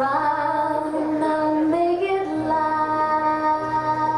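A song: a high singing voice holding long notes, stepping up in pitch about two seconds in, over backing music with a steady low bass note.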